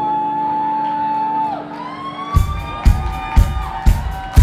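Live band music between sung lines: a long held note that slides up, holds, then bends down, followed by a second rising note, before a kick-drum beat comes in about halfway through at roughly two beats a second.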